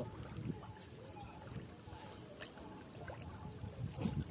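Small ripples lapping faintly at a muddy shoreline, with faint voices and a click or two.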